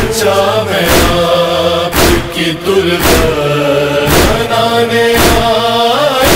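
A male chorus holds a sustained chanted backing line between verses of an Urdu noha. A steady thump sounds about once a second.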